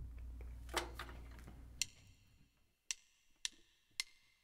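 Faint low hum and a couple of soft clicks, then a backing track's count-in: three sharp, evenly spaced ticks about half a second apart in the second half, setting the tempo for a jazz 2-5-1 play-along.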